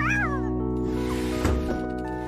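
A cat's meowing yowl, its pitch rising and falling, in the first half-second, followed by background music holding steady chords.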